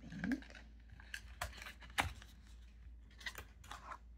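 A small paperboard ink box being opened by hand: a scattering of light clicks and scrapes from the cardboard flaps, the sharpest about halfway through.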